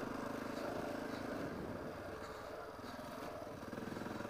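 Dirt bike engine running steadily while riding; the engine note eases off about one and a half seconds in and picks up again near the end.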